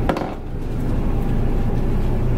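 Twin diesel engines of a 1999 Viking 60 motor yacht idling steadily, a low even hum heard at the helm, with a sharp click at the very start.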